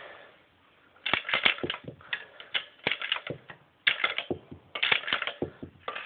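Pennies being fed one after another through a copper penny sorting machine: after a quiet first second, quick bursts of clicking and metallic clatter come roughly every half second as the machine kicks each coin to one side or the other, sorting pre-1982 copper pennies from newer zinc ones.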